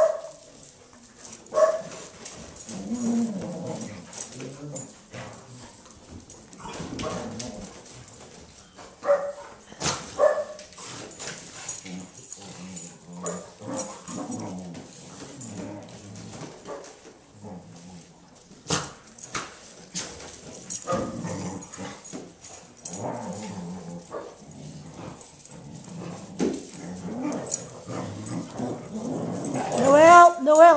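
Several dogs play-fighting, with a few sharp barks and a near-continuous mix of rough play vocalizations between them.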